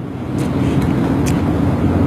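Low, steady motor-like rumble that grows louder over the two seconds, with a few faint clicks.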